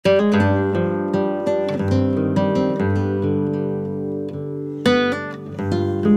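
Background music: plucked acoustic guitar playing a run of notes, with a louder strummed chord about five seconds in.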